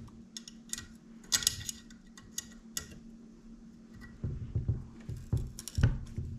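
Hex key turning and tightening screws in a metal rifle handguard rail: scattered small sharp metal clicks and ticks, then a few duller knocks from handling near the end.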